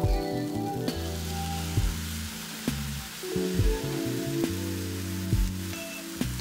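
Background music with a steady beat of about one thump a second, over the sizzle of risotto rice cooking in a wide pan.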